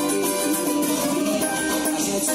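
Cavaquinho strummed in a quick, steady rhythm of chords, its small steel strings bright and ringing.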